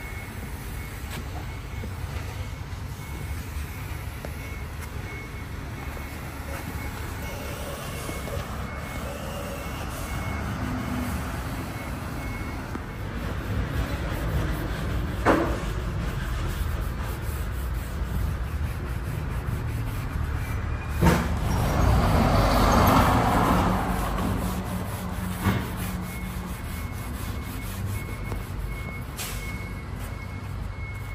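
Steady low rumble of a vehicle engine running nearby, with a faint high beep repeating through the first part and again near the end. A few sharp knocks, and a louder hiss that swells and fades about three quarters of the way in.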